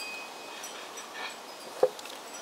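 Quiet steady background hiss with a single short, sharp knock near the end.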